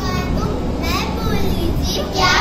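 A young girl speaking.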